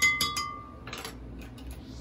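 Measuring spoon clinking against a glass mixing bowl, a quick run of clinks with a brief ring, followed by a short scrape about a second in.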